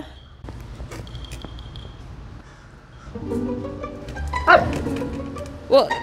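Siberian husky rummaging with its head in a plastic candy bucket, with faint rustles and clicks. Background music comes in about halfway. Near the end the husky gives a brief bending, yowling vocalization.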